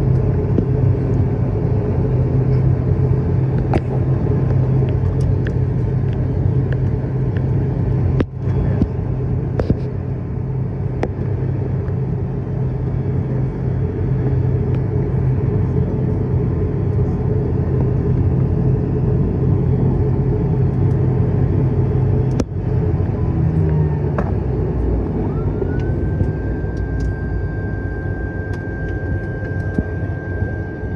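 ATR-72 turboprop engine and propeller running steadily while the aircraft taxis, heard as a loud drone inside the cabin. About 22 s in the drone drops, and a whine rises and then holds as a steady high tone.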